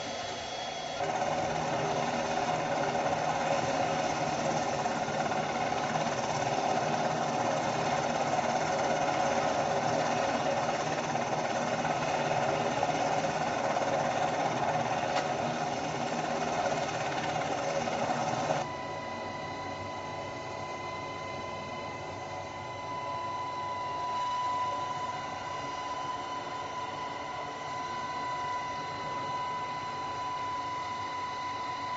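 Helicopter engine and rotor noise heard from inside the cabin, played back over room speakers: a steady mechanical drone. About two-thirds of the way through it drops abruptly to a quieter sound with a steady high whine.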